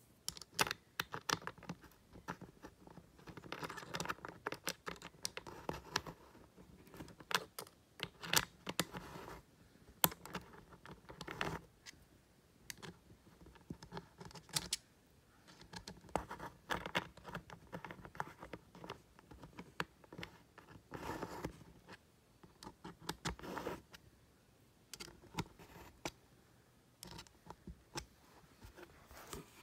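Hands handling and working on a first-generation Apple Magic Keyboard: many scattered sharp clicks of plastic and keys, with several short stretches of scratching and scraping.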